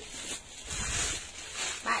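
Clear plastic packaging crinkling and rustling as a bagged jacket is picked up and handled.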